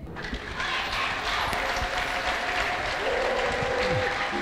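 Large congregation applauding steadily, with a faint held tone coming in about three seconds in.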